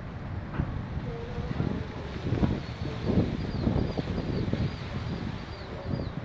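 Wind buffeting a phone microphone in irregular gusts, over the low rumble of a departing jet airliner climbing away. From about halfway there is a faint, repeated high chirping.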